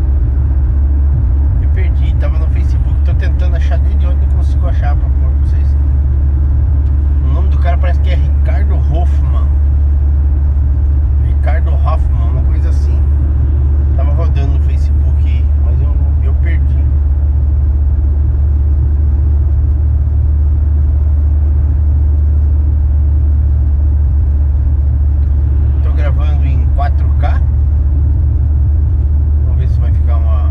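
Steady low drone of a car's engine and tyres heard from inside the cabin while driving, with a man's voice speaking now and then.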